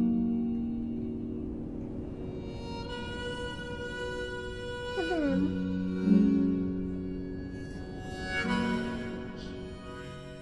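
Slow instrumental background music of long held notes, moving to a new chord about halfway through and again near the end.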